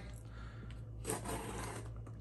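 A blade cutting open the packing tape on a cardboard box: faint scraping in two short stretches with a brief pause between them.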